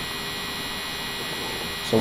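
Steady electrical hum with a hiss of background noise, unchanging throughout; a single spoken word comes at the very end.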